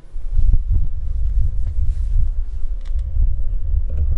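Wind buffeting a handheld camera's microphone: a loud, uneven low rumble.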